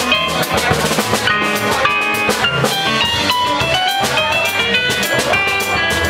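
Live Latin jazz band playing: an electronic keyboard plays quick runs of notes and chords over a drum kit and a bass line.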